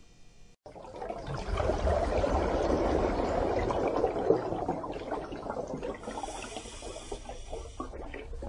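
Water sound effect: a steady wash of water noise that starts suddenly after a short silence about half a second in, loudest over the next few seconds and easing off in the second half.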